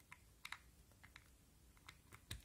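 Faint, light clicks of a micro-USB plug and the plastic stick casing being handled as the OTG cable is pushed into an Amazon Fire TV Stick 4K's port: a few scattered ticks, two close together about half a second in.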